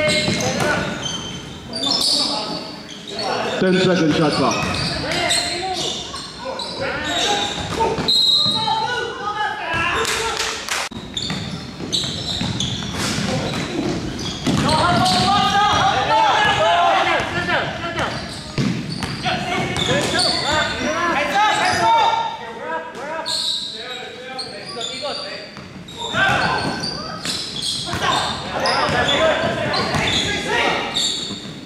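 Basketball being dribbled on a hardwood gym floor, with indistinct voices of players and onlookers calling out, echoing in a large hall.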